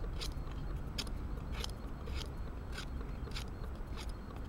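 The spine of a Helle Eggen knife scraping in short, repeated strokes, a little under two a second.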